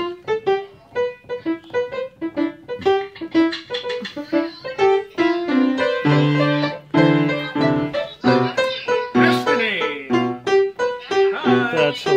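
Yamaha upright piano played by a toddler and an adult, many notes and clusters struck in quick irregular succession, with a few chords held for about a second around the middle.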